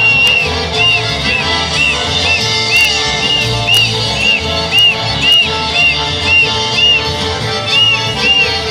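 Argentine Litoral folk dance music of the chamamé/chamarrita kind, played with a steady beat. A short, high, arching whistle-like note repeats about twice a second over it.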